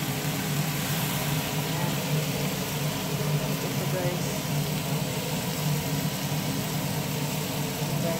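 Shrimp frying in butter and soy sauce in a metal pan: a steady sizzle over a low steady hum.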